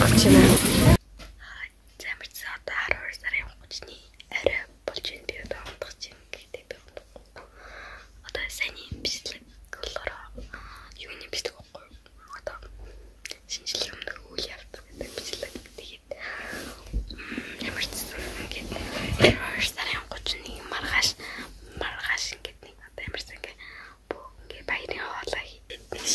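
About a second of louder speech cuts off abruptly, then a girl whispers close to the microphone.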